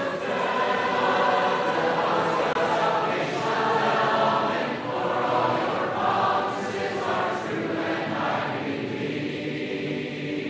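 A large congregation singing a hymn in four-part harmony, unaccompanied, closing the verse on a long held note near the end.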